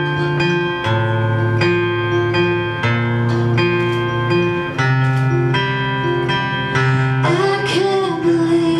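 Acoustic guitar strumming chords in an instrumental passage of a live song, the chord changing about once a second. Near the end a voice slides up into a sung note.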